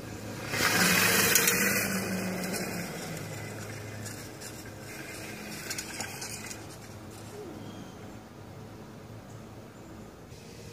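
A small motorbike engine running, loudest about a second in and then fading steadily as it moves away.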